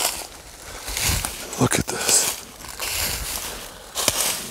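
Footsteps crunching through dry fallen leaves, several separate steps in an uneven walking rhythm.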